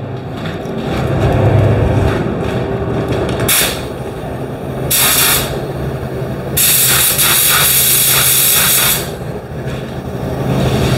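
Gravity-feed paint spray gun hissing each time its trigger is pulled, spraying paint: two short bursts, then a longer spray of about two and a half seconds in the second half. A steady low hum runs underneath.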